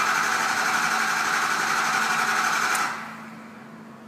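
Ford 6.0L Power Stroke V8 diesel cranking steadily on its starter without firing, stopping abruptly about three seconds in. This is the crank no-start with injection control pressure (ICP) too low to fire.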